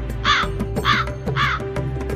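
A crow cawing three times, about half a second apart, over steady background music.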